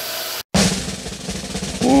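Small bench belt sander running steadily, cut off abruptly a little under half a second in; then drum-heavy music with a rapid snare-like roll.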